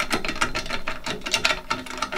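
A quick, continuous run of small mechanical clicks and ticks from hands working a wheel into a scooter's fork.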